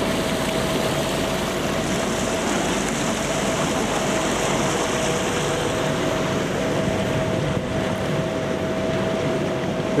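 Electric-converted speedboat under way: a steady rush of water from the hull and wake, with a thin steady whine from the drivetrain running through it.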